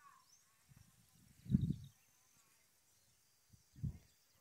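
Quiet outdoor background with a faint bird chirp at the start, broken by low bumps of handling noise on the phone's microphone, the loudest about a second and a half in and a shorter one near the end.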